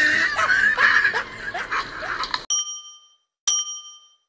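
Wavering, high-pitched vocal cries that cut off abruptly about two and a half seconds in, followed by two bright bell-like dings about a second apart, a sound effect for a like-and-subscribe end card.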